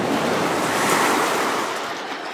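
Whoosh sound effect of an animated logo intro, a rushing, water-like noise that swells to a peak about a second in and then begins to fade.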